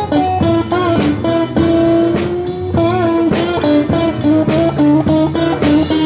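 Live electric blues band: an electric guitar plays a lead line of held, bent notes over bass and drums.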